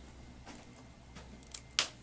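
Scissors snipping a budgerigar's flight feathers during a wing clip: a few faint clicks, the sharpest two close together near the end.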